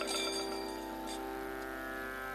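Kathakali accompaniment: a steady drone of held tones with a struck metal percussion instrument ringing out at the start, then a faint second strike about a second in.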